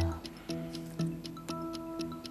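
Quiz-show thinking music: held electronic chords under a steady clock-like tick, with a new accent about twice a second.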